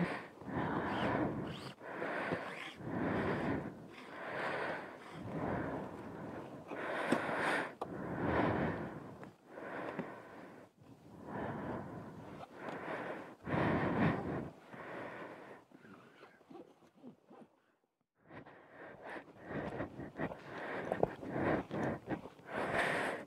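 A person breathing close to the microphone, in and out in a steady rhythm of roughly one breath sound a second, falling quiet for a couple of seconds near the end.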